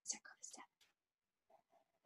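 Near silence, with a few faint, brief sounds in the first half-second and a fainter one about a second and a half in.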